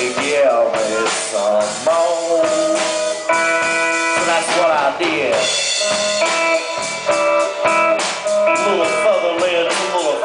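Live blues band playing an instrumental passage: electric guitar, electric bass and drum kit, with a harmonica cupped to the vocal microphone playing long held and bent notes.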